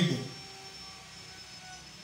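A man's amplified voice finishing a word, then a pause of about a second and a half holding only a faint, steady background hum.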